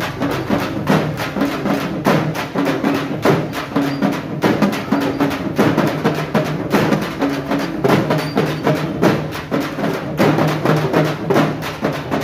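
Folk drum ensemble of several hand-held frame drums struck in a fast, steady rhythm, with short pitched notes sounding beneath the beat.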